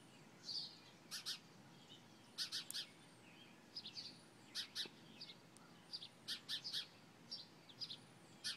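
Birds chirping: clusters of two to four quick, sharp high notes repeating every second or so, with an occasional thin high whistle.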